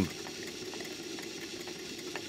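Stuart 5A single-cylinder vertical steam engine running on steam at a steady speed, a soft even exhaust sound with faint ticks, running very sweetly.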